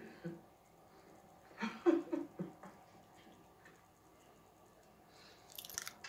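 A person chewing a mouthful of food, faint and wet, with a few short hummed 'mm' sounds about two seconds in and a brief rustle near the end.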